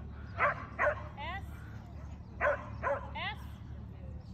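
A dog barks twice, then twice more about two seconds later, and each pair of barks is followed by a high, rising whine.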